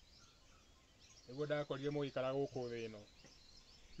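A man's voice speaking for about two seconds, starting a little over a second in, over faint outdoor background noise.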